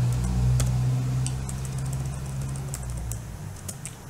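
Computer keyboard keys clicking in an irregular run of keystrokes as text is typed, over a steady low hum that fades near the end.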